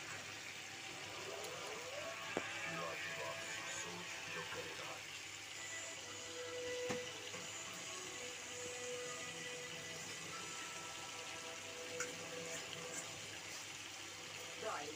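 Small-fish curry simmering in a kadhai over a gas burner: a steady bubbling hiss, with a few light knocks of a spoon being stirred near the start.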